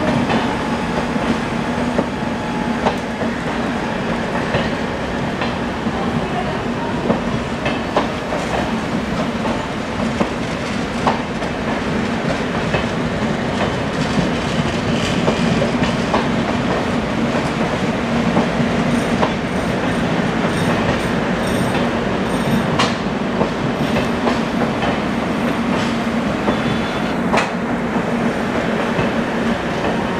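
Humsafar-liveried AC passenger coaches of a departing train rolling past, the wheels clicking over rail joints and points over a steady rumble. A few brief, faint high wheel squeaks come past the middle.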